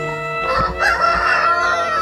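Rooster crowing: one long, loud crow starting about half a second in and held to the end, over background music.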